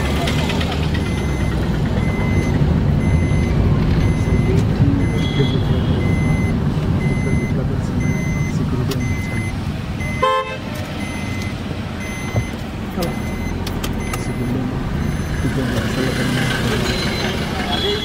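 Car cabin noise while driving slowly: steady engine and road rumble, with a faint high electronic beep repeating about twice a second. A brief horn toot sounds about ten seconds in.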